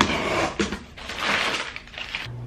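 A taped cardboard box being opened by hand: a sharp click, then the packing tape slit and the flaps pulled open, and crumpled brown packing paper rustling as it is pulled out, in two noisy stretches.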